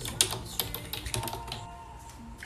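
Typing on a computer keyboard: an irregular run of key clicks.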